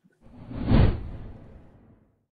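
Whoosh sound effect of a segment intro sting: one rushing swell with a deep low rumble, peaking just under a second in and then fading away.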